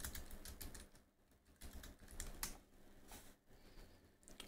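Faint computer keyboard typing: scattered key clicks with short pauses between them.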